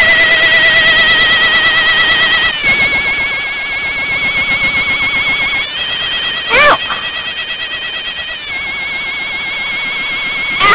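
A battery-powered toy alien's electronic laser sound effect, switched on by the button on its back. It is a loud, warbling, siren-like tone that starts suddenly and steps to a new pitch every few seconds. A short high squeal cuts in about two-thirds of the way through.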